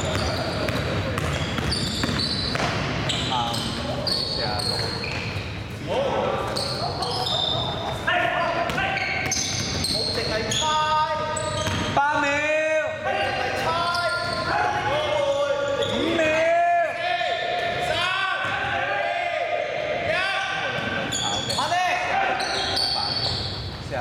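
A basketball being dribbled on a wooden indoor court, with repeated sharp bounces, mixed with players' voices calling out during play, echoing in a large sports hall.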